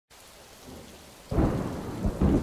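Recorded rain and thunder opening a song: a faint steady patter of rain, then a loud low rolling rumble of thunder that starts suddenly a little past halfway.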